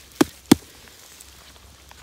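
Two sharp taps about a third of a second apart, the second a little louder, as a gloved hand pats the cap of a large, fat orange bolete.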